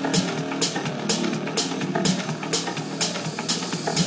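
Techno music: a hi-hat pattern about twice a second over synth tones, with little deep bass.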